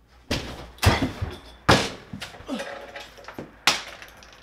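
An interior door being banged: four sharp thuds spread over a few seconds, the middle two the loudest.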